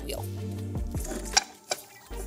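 A few light metal clicks and one sharper knock as the graver-holding fixture of a GRS sharpening system is handled and set against its post. A steady low hum runs underneath.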